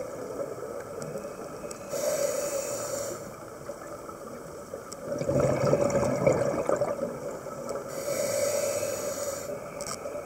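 Scuba diver breathing through a regulator underwater: a hissing inhale about two seconds in, a louder rush of exhaled bubbles at about five to seven seconds, and another hissing inhale near the end.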